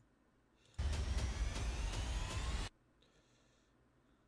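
Sound effect from an anime fan-animation trailer: a loud rushing noise with a rising whine, starting about a second in and cutting off suddenly about two seconds later.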